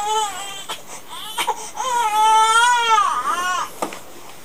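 A baby crying: a short wail ending about half a second in, then a longer, wavering wail lasting nearly two seconds from about two seconds in. A couple of sharp clicks fall between the cries.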